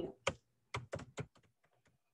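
Typing on a computer keyboard: a quick run of keystrokes, the louder ones in the first second and a half, with fainter taps after.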